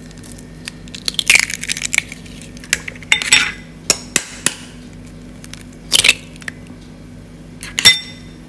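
Raw eggs being cracked against the edge of a bowl: a series of sharp taps and clinks, some followed by a brief crackle of breaking shell.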